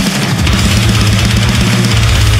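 Deathcore instrumental passage: distorted electric guitars and bass over a rapid kick-drum pattern on a drum kit, with no vocals.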